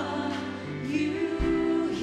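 Live gospel worship music: women singing long, held notes with vibrato over a live band, with a drum thump about one and a half seconds in.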